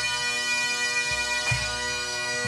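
A pipe band playing: Great Highland bagpipes sounding a chanter melody over their steady drones, with drums beating beneath, including several low bass-drum thumps and a couple of sharp drum strikes.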